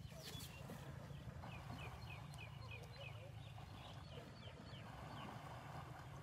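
Faint outdoor ambience: a steady low rumble under a bird chirping a quick series of short, high notes, about three a second.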